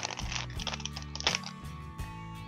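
Clear plastic packaging crinkling and rustling in a few short bursts as a ring-bound paper binder is handled and lifted out, over quiet steady background music.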